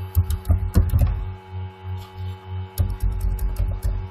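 Two clusters of sharp clicks with low thumps, one in the first second and one near the end, from mouse and desk handling close to the microphone. Under them runs a steady electrical mains hum.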